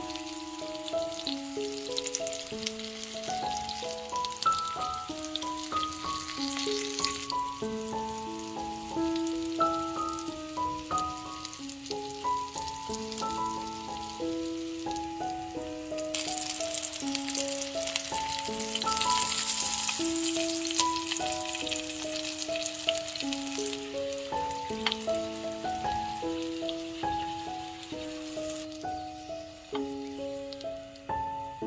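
Flour-coated potato slices frying in hot vegetable oil in a pan, a steady sizzle with fine crackles that grows louder for the first seven seconds or so and again from about 16 to 23 seconds. Background music with a simple melody plays throughout.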